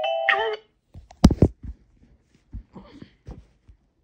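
Chiming music with a voice that cuts off half a second in, then a sharp knock about a second in, followed by a few softer clicks and rustles.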